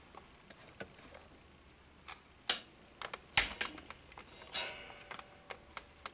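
Handling noise at a workbench: a few scattered light clicks and taps at irregular intervals, the sharpest about two and a half and three and a half seconds in.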